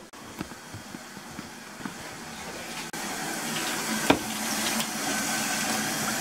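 Kitchen sink faucet running, water pouring into the sink, growing louder over the first few seconds and then steady. A sharp click about four seconds in.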